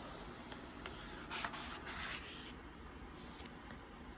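A picture-book page turned by hand: a soft rubbing swish of paper, loudest between about one and two and a half seconds in, with a few light ticks.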